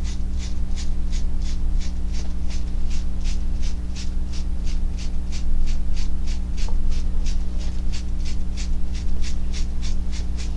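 A sponge dabbing acrylic paint onto a canvas panel, about four light strokes a second, stippling a gravel texture, over a steady low hum.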